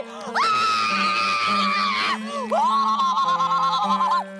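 A woman screaming with delight in two long, high held cries, the second a little lower in pitch than the first, over background music.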